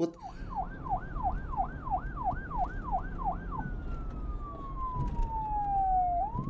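Police-style siren: a fast warbling yelp of about three pitch sweeps a second, which switches a little over halfway to a slow wail that falls in pitch and begins to rise again at the very end, over a steady low rumble.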